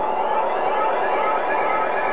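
Live electronic music: layered sustained synthesizer tones, several held notes sounding at once.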